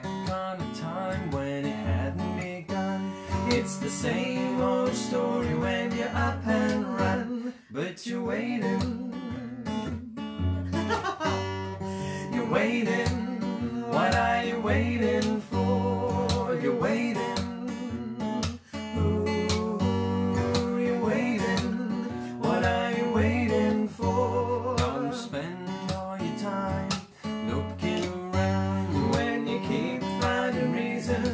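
Acoustic guitar strummed steadily, accompanying a woman and a man singing a folk song together.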